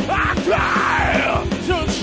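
Live power metal band playing loudly: distorted electric guitar and drums, with a singer's voice gliding up and down in pitch over them.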